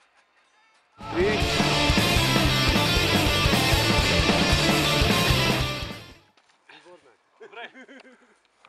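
Rock song with a steady drum beat, bass and electric guitar, which starts suddenly about a second in and fades out quickly about six seconds in; the band's own song, the music-video track.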